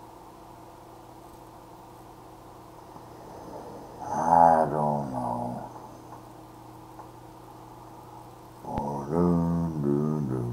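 A man's wordless vocal sounds, pitched and bending in tone: one about four seconds in and another near the end, each a second or two long.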